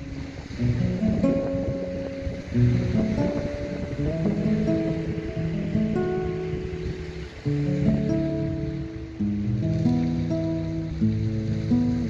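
Acoustic guitar playing an instrumental passage of a worship song, with plucked notes and chords, over a steady background hiss.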